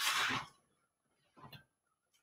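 A brief rustle and scrape of a poster-board alphabet chart being handled and shifted on a counter, then near silence broken by one faint tap about one and a half seconds in.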